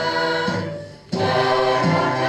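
A choir singing held chords. The singing fades away a little before the middle and cuts back in abruptly just after.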